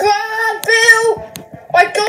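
A child's high-pitched voice singing two held notes, each about half a second long, then a short pause before more singing or sing-song voice near the end.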